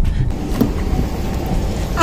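Low, steady rumble of a Honda car's engine and road noise heard from inside the cabin.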